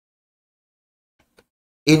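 Near silence, broken by one faint click about one and a half seconds in, then a man starts speaking just before the end.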